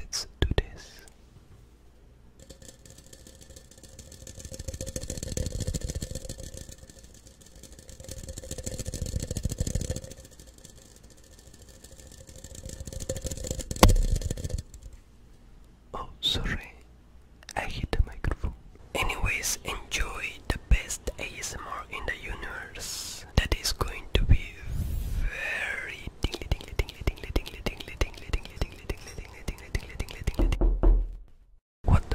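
Close-microphone ASMR sounds with an empty glass jar: first a faint steady hum with two slow breathy swells, then from about the middle on a busy run of sharp taps and clicks mixed with whispering.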